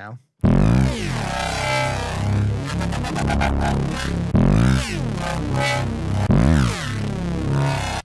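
Intense Phase Plant software-synth bass patch playing a bass line with sweeping pitch bends and fresh attacks, starting about half a second in. The phaser effect is switched off, and a touch of movement from the patch's eight-voice detuned unison remains.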